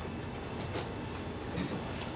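Marker pen writing on a whiteboard: a couple of faint, short strokes, about a second apart, over steady background noise.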